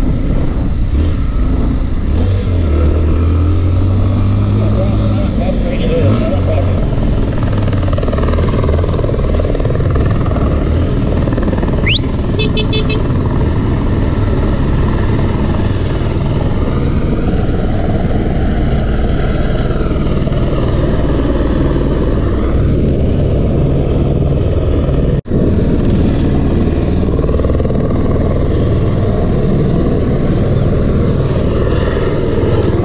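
Motorcycle engine running while riding over a rough dirt track, heard from the rider's position, with the pitch rising a few seconds in as it speeds up. The sound cuts out for an instant near the end.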